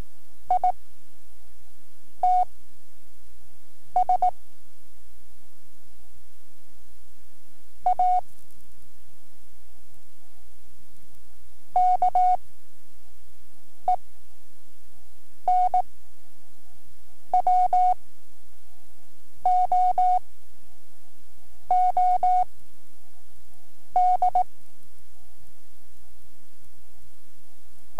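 Slow practice Morse code from a training cassette: a single steady beep tone keyed in quick short clusters, one character at a time, with gaps of about two seconds between characters. Faint tape hiss and a low hum run underneath.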